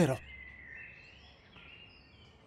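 The end of a man's spoken line, then faint outdoor background ambience with thin, wavering high-pitched chirps.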